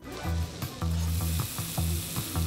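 Steak and vegetables sizzling in a hot pan, starting suddenly, over background music with a pulsing low bass.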